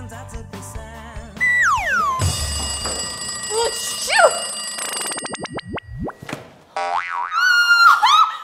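Cartoon-style comedy sound effects over background music: a falling whistle-like glide about one and a half seconds in, then springy boing effects with quick rising and falling sweeps, and a wobbling tone with repeated pitch bends near the end.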